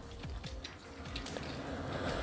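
Faint clicking and rubbing of plastic as hands turn a Transformers Legacy Leader Class Laser Optimus Prime action figure around, under faint music.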